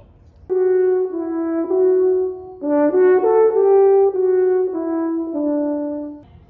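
French horn playing a short unaccompanied melody of held notes in two phrases, starting about half a second in.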